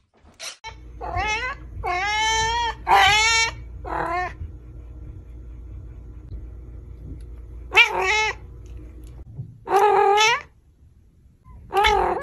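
A cat meowing: four drawn-out meows in quick succession in the first few seconds, then two more about eight and ten seconds in, over a low steady hum.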